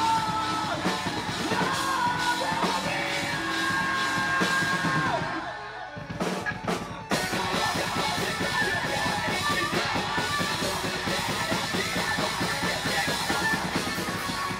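Live progressive metalcore band: yelled vocals over distorted electric guitars and a Tama drum kit. About six seconds in the band drops out briefly with a couple of sharp stabs, then comes back in with fast, dense guitar and drums.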